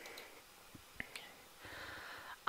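Near silence: faint room tone with a few soft, short clicks, the clearest about a second in.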